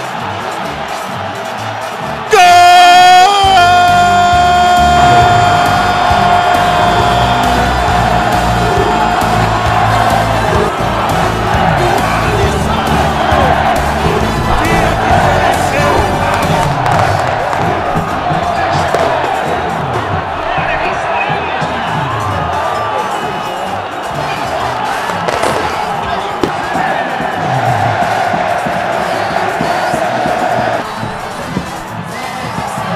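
Football stadium crowd cheering and shouting in a goal celebration, mixed with music. About two seconds in the sound jumps louder as a long, steady held note comes in and lasts several seconds before the crowd noise takes over.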